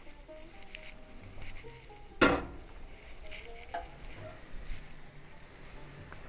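Metal cooking pot set down on a gas stove's grate: one sharp clank about two seconds in, then a lighter knock, over faint background music.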